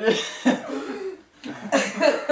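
A man and a woman laughing hard in loud, breathy bursts that start suddenly, with a short break about one and a half seconds in.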